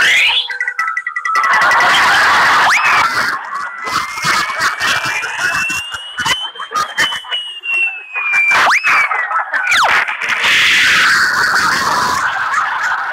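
Cartoon music and sound effects accompanying a bowling throw: a long whistling tone glides slowly up and then down over about six seconds, with quick swooping whistles at its start and end, over a steady noisy rush.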